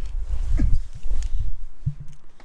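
Rumbling handling noise with knocks and rustling as a handheld camera is carried into a car's driver's seat, ending in a single low thump near the end.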